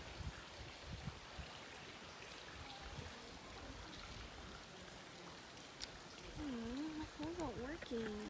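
Faint outdoor background with an irregular low rumble, and a person's voice talking indistinctly for the last second and a half or so.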